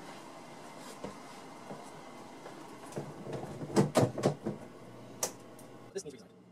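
Knocks and clatter of objects being handled, bunched together about three to four and a half seconds in, then a single sharp click near the end, over a steady background noise.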